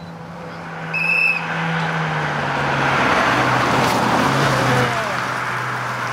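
Ford Focus rally car's engine working hard as the car approaches and passes along a tarmac stage, growing louder toward the middle. Its note drops in pitch about two seconds in. A brief high-pitched chirp sounds about a second in.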